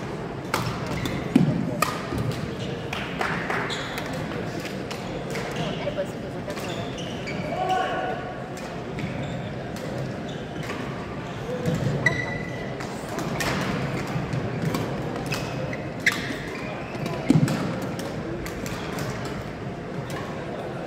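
Badminton rackets striking shuttlecocks: scattered sharp pops, the loudest a few seconds apart, echoing in a large gym. Indistinct voices carry on throughout.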